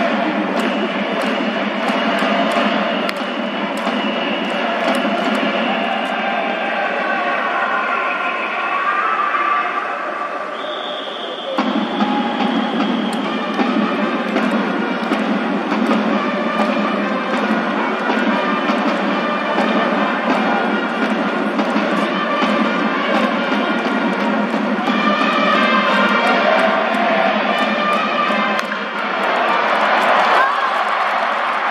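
Baseball stadium crowd cheering to music in rhythm, with repeated sharp beats and sustained pitched instruments, like a Japanese cheering section's drums and trumpets backing a batter.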